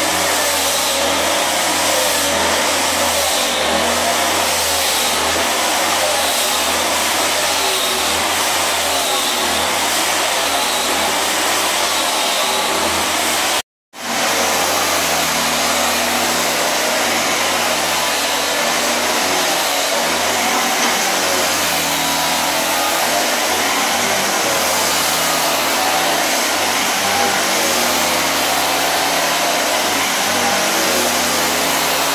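Electric sander running steadily as it sands an old solid-wood parquet floor, a loud continuous grinding whir. The sound cuts out for an instant about halfway through, then carries on.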